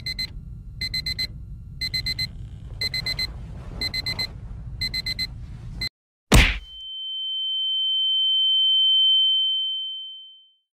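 Alarm clock beeping in quick bursts of several high beeps about once a second, over a low rumble. The beeping stops and a toy truck hits with a single hard whack about six seconds in, followed by a steady high-pitched ringing tone that swells and then fades.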